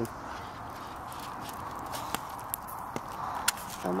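Stew being ladled from a cast iron Dutch oven into a bowl: a few sharp clicks of the ladle against the pot and bowl in the second half, over a steady low hiss.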